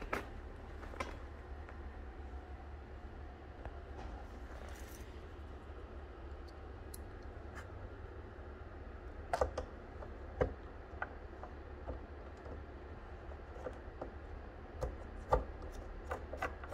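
Faint, scattered clicks and taps as screws and a small screwdriver are handled against the plastic back housing of a Tesla Wall Connector, with a couple of louder taps near the middle, over a steady low hum.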